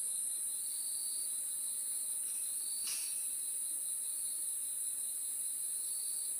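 Steady high-pitched hiss with a faint thin tone beneath it, and a faint tick about three seconds in.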